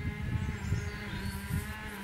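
A cow mooing: one long, steady call.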